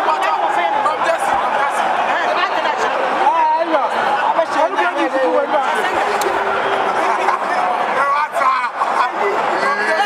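Stadium crowd of many voices talking and calling out at once, a steady babble with no single voice leading.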